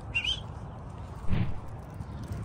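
A single short bird chirp just after the start, over a steady low outdoor rumble, with a brief muffled thump about a second and a half in.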